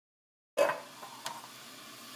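A Chinese cleaver knocking on a wooden cutting board while mincing scallops: one sharp knock about half a second in, then a fainter one, over a steady faint hiss.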